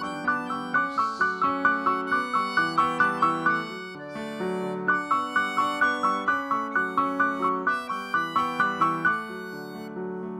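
Accordion and electric keyboard playing an instrumental passage with no vocals: a melody of quick, evenly spaced notes, about four a second, in two phrases over held lower notes.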